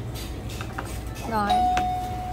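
Mobility scooter's electronic horn sounding one steady, single-pitch beep that starts about three-quarters of the way through and holds.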